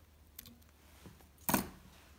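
Small fly-tying scissors working at the hook in the vise: a faint click about half a second in, then one sharp, louder metal click about a second and a half in.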